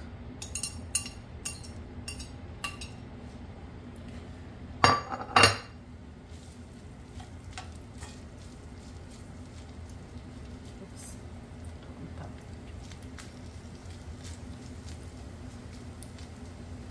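Metal tongs clinking against a plate and a ceramic skillet as diced sausage is scraped into the pan, with two loud knocks about five seconds in. After that, only occasional faint clicks of the tongs turning the sausage over a low steady hum.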